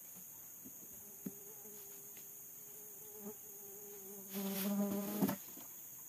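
A flying insect buzzing in a steady hum that swells louder about four seconds in and stops about a second later, over a steady high-pitched chorus of insects, with a couple of faint knocks.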